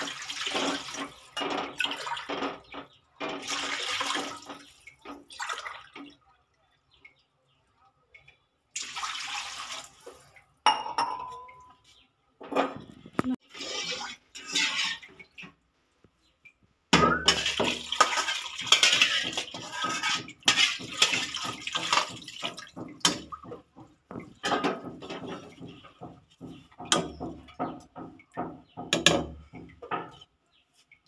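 Water poured from a steel tumbler into an aluminium pot, then a spoon clinking and scraping against a metal pressure cooker. The sound comes in several separate stretches with short quiet gaps, and the busiest, loudest clinking starts a little past halfway.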